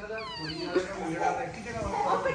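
A small child's high-pitched squeal, falling steeply in pitch in the first second, followed by quieter voices.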